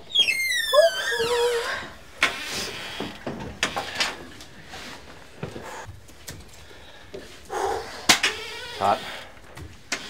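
Wooden barrel-sauna door creaking open with a high squeal that falls in pitch over about a second and a half, followed by scattered knocks and thuds of wood.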